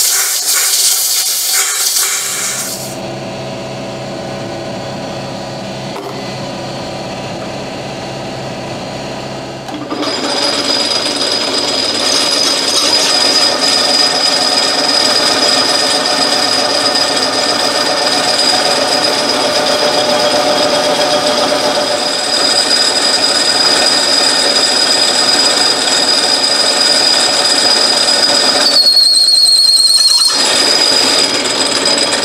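Compressed-air blow gun hissing for a couple of seconds, then a belt-driven metal lathe running with a steady hum. From about ten seconds in it gets louder and rougher with a steady high whine as the tool turns down the edge of the spinning disc.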